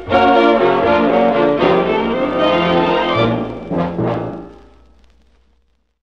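Dance orchestra led by brass, with timpani, playing the closing bars of a swing waltz. The last accented chords come around three and four seconds in, then ring out and fade to silence.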